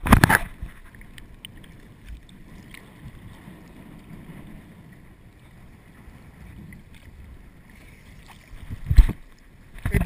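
Sea water sloshing and slapping against a camera at the ocean surface: a sharp splash right at the start and another about nine seconds in, with low, quieter lapping of waves between.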